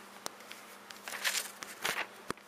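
Handling noise from a camera being carried: a few sharp clicks and short rustles over a faint steady hum.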